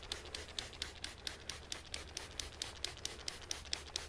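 Handheld trigger spray bottle squeezed over and over, misting water onto freshly sown seeds in potting soil: a quick, even run of short sprays, several a second.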